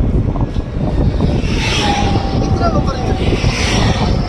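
Road traffic and wind heard from a moving vehicle: a steady low rumble of engine and wind on the microphone. A hissing rush swells up partway through, with a brief faint steady whine in the middle.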